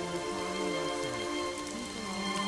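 Soft music with sustained notes and a slow low melody, laid over a steady rain sound.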